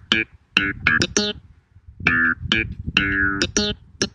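A hip-hop bass loop sample playing back from a computer: short plucked bass-guitar notes in a phrase that repeats about two seconds later.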